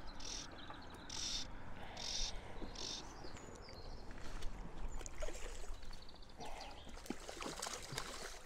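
Fly line being stripped in by hand while playing a hooked trout, giving short hissing pulls about once a second for the first three seconds. After that come scattered light knocks and small splashes as the fish is drawn towards the net.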